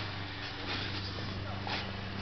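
An engine running steadily at an even pitch, with no change in speed.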